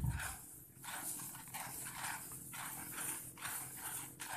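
Soaked, sprouting rice seed being stirred by hand in a basin to coat it evenly with Furadan insecticide granules: a faint, repeated rustling of wet grain in short strokes.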